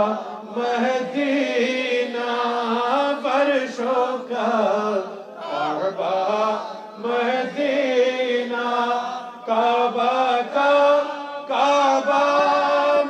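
Men chanting the devotional salutation to the Prophet (salam, durood) in long, drawn-out melodic phrases with short breaks between them.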